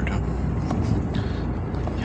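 A car driving along a road, heard from inside the cabin: steady engine and tyre noise with a low hum.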